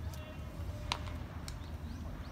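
Ballpark ambience with faint distant music and a low steady rumble, broken by a single sharp knock about a second in.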